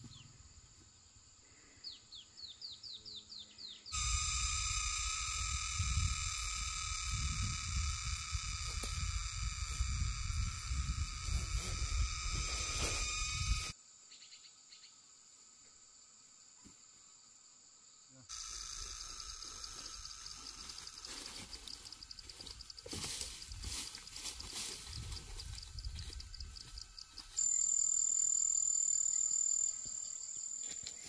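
Forest ambience of insects buzzing in steady high tones, with a few short bird chirps and a low rumble under the loudest stretch. It comes in sections that start and stop abruptly, and a louder, shriller insect tone cuts in near the end.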